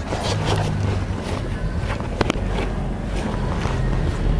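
Steady low rumble of wind on the microphone, with two sharp clacks about two seconds in as a pile of sandals and shoes is handled.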